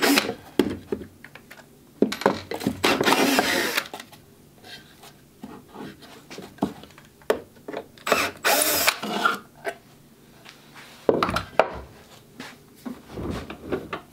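Cordless drill backing screws out of a wooden cover, running in several short spurts of one to two seconds with pauses between.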